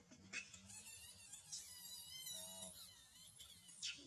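Faint, high-pitched, wavering screams of a macaque in distress while it is pinned down in a scuffle.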